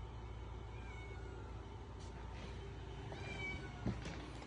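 A house cat meowing faintly a couple of times.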